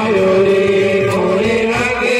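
Male voices chanting a devotional song with long held notes and slowly moving pitch, with music underneath.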